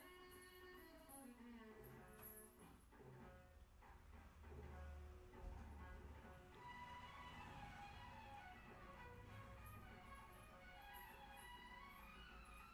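Music playing faintly from a television: a melody of gliding, sliding notes over a steady low accompaniment.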